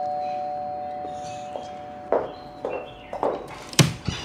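Doorbell chime ringing out, its two steady notes fading away over the first two seconds. A few soft taps follow, then a sharp click near the end.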